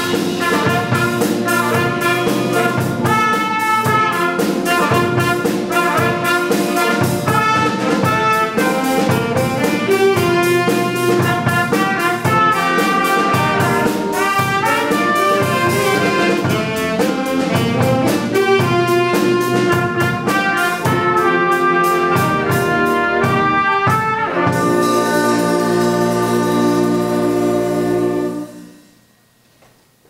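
High school band of saxophones, trumpet, tuba, flutes and drum kit playing a jazz-style tune, with the drums keeping a steady beat. About four seconds from the end the beat stops and the band holds a final chord, released together to end the piece.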